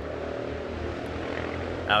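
A steady engine drone, an even hum of many tones throughout.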